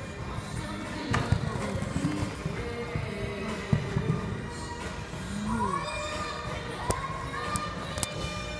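Scattered dull thuds of a show-jumping horse's hooves on the arena footing as it canters and jumps, the sharpest about a second in, near four seconds and near seven seconds, over music and a voice from the hall's speakers.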